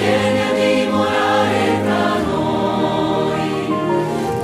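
A choir sings an Italian worship song over instrumental backing, holding long notes on the line "vieni a dimorare tra noi".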